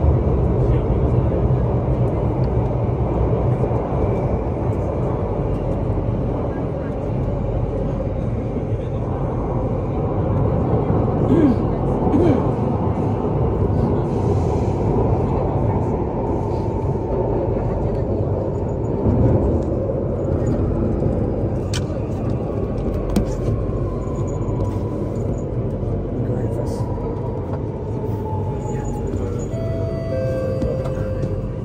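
Circle Line C830C metro train running through a tunnel: a steady rumble of wheels on rail. Near the end a whine slides down in pitch as the train slows on its approach into the station.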